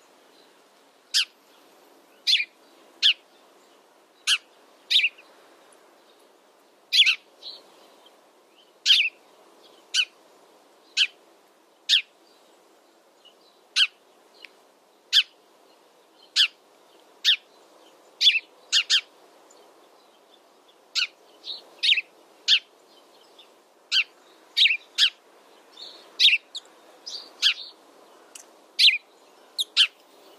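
House sparrow chirping: short, sharp, falling chirps, about one a second at uneven spacing and now and then two in quick succession, over a faint background hiss.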